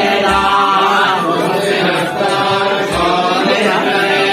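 Vedic mantras chanted in a steady, drawn-out recitation, with two short low thumps, one near the start and one about three seconds in.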